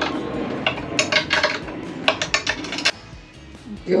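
Stainless steel brackets being handled and set in place, giving a run of sharp metallic clinks and knocks over the first three seconds, then a quieter stretch.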